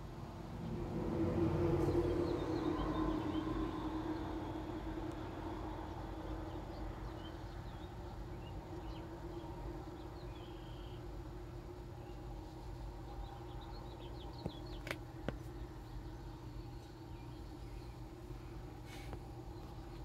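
Quiet outdoor ambience over a steady low hum. A broad rush of noise swells about a second in and fades over the next few seconds, and faint high bird-like chirps come and go.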